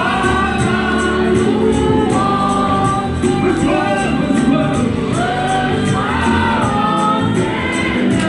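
Gospel worship song: several voices singing together over band accompaniment, with a steady percussion beat.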